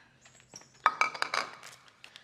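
A bowl set down on a kitchen counter: a quick cluster of clinks and knocks about a second in, with a short ring.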